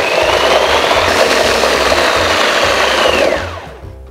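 Food processor motor running at speed, pureeing thick hummus, with a high whine over the churning. Near the end the whine falls away as the motor is switched off and spins down.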